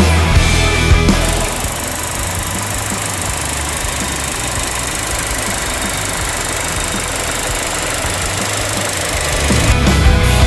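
Audi Q2's petrol engine idling steadily, heard close to the open engine bay. Rock music plays for about the first second, stops as the engine sound begins, and comes back just before the end.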